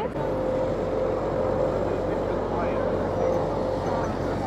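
Steady road traffic: cars and buses running past, with a constant engine hum under an even wash of noise.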